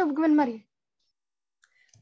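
A voice speaking for about half a second, then silence for the rest.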